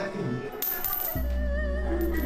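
A coin tossed onto a ceramic tile floor, hitting about half a second in and ringing with a wavering tone as it spins and settles. It is a divination toss whose faces tell whether the ancestors have finished eating. Background music with a low steady hum comes in about a second in.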